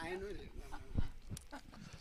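Faint voices off the microphones, a bending voice at first and then low murmur, with a single short thump about a second in.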